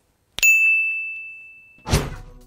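A single bright ding, a bell-like sound effect that strikes sharply and rings on one high tone, fading over about a second and a half. Near the end comes a sudden loud burst of noise as the picture flashes to white.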